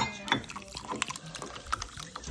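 Crinkling and rustling of a plastic snack pouch as it is handled: a quick run of irregular small crackles.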